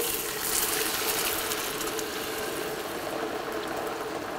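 Cooked chickpeas and their cooking water being poured into a hot frying pan of onion-tomato masala: a steady rush of liquid splashing into the pan.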